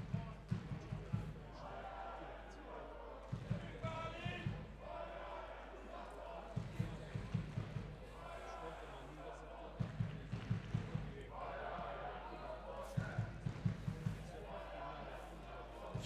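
Faint football supporters chanting to a drum, with a short cluster of drumbeats about every three seconds.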